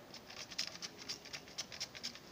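Water spattering and dripping onto a steel drill hammer from a spray bottle that is not spraying properly: a faint, quick, irregular patter of small ticks.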